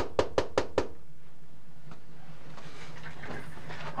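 A quick run of evenly spaced knocks, about five a second, that stops about a second in, followed by only a faint steady hum.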